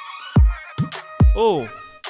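Electronic-produced song intro: three deep bass kicks, each dropping sharply in pitch, over a held synth tone, with a short drawn-out 'oh' sung near the end.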